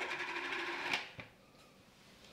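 Plastic ice cream tub being handled: about a second of rustling and scraping that ends in a click, then one more light click.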